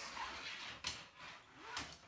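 Canvas tent fabric rustling as it is handled on a wooden floor, with two sharp knocks a little under a second apart.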